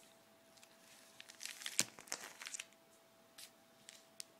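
Plastic binder pages of a trading-card binder crinkling as a page is turned: a burst of crackles in the middle, loudest about two seconds in, then a few single crackles near the end.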